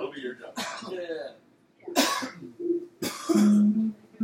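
Voices in a small bar room and a cough about halfway through. Near the end a held low guitar note starts to sound through the amplifier as the band begins its next song.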